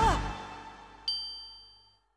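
The final note of the cartoon's theme song slides down in pitch and fades out, then about a second in a single bright, high ding sounds and rings away.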